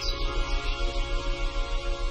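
Ambient meditation background music: held, sustained tones over an even low pulse that beats about five times a second.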